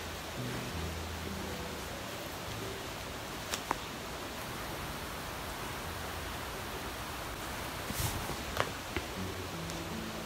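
Steady background hiss, with a few faint, brief rustles and clicks about a third of the way in and again near the end, from hands working wet hair into a ponytail with a hair tie.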